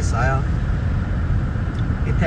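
Steady low rumble of a car being driven along a road: engine and tyre noise.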